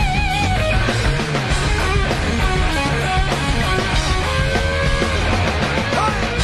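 Rock band playing an instrumental passage: a Stratocaster-style electric guitar through Marshall amps plays held lead notes, wavering with vibrato near the start, over bass and drums.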